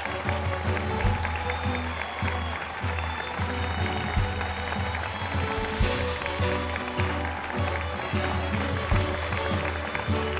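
Music with held notes and a low bass line, over a large crowd applauding.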